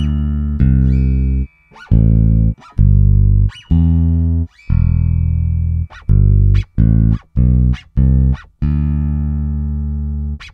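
Sampled Precision-style electric bass from the Ample Bass P Lite II plugin playing about a dozen low notes, some held and some short. The plugin's string-scratch noises are played before and after the notes, heard as short sharp clicks at the note edges.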